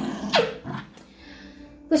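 Small white dog giving one short, high call that falls steeply in pitch, about half a second in, while being hugged.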